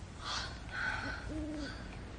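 A woman laughing softly: breathy puffs of laughter, then a short held low 'hoo' in her voice in the second half.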